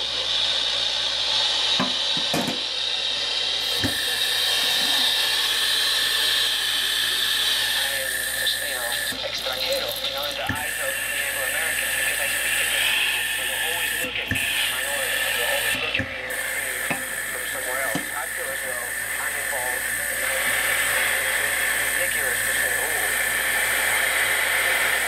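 Kitchen sink sprayer running steadily, water splashing onto a handheld Casio SY-4000 LCD TV. The TV's speaker plays poor-reception broadcast sound with a voice in it.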